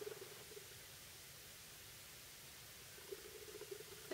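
Near silence: faint, steady room-tone hiss.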